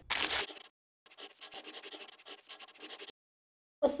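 Paper sound effect: a short swish of paper, then about two seconds of faint, quick scratching strokes.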